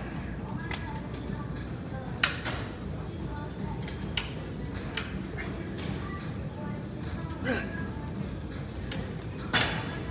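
Steady gym room hum with scattered short, sharp clicks and knocks. A few brief breathy vocal sounds come during bodyweight squats, the loudest a breathy burst near the end.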